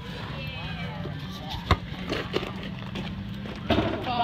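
Faint voices of people talking outdoors, with one sharp knock a little before halfway and a couple of softer knocks after it.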